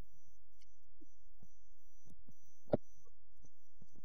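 A low steady hum with faint, irregular soft thumps, and one sharper click about three-quarters of the way through.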